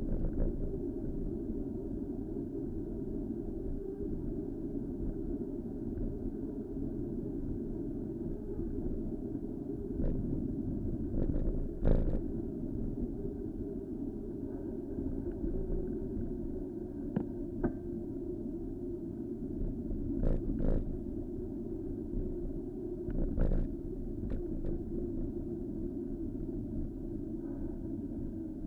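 Steady low rumble of wind and road noise on a riding bicycle's camera microphone, muffled with little treble, broken by a few sharp knocks from bumps in the road.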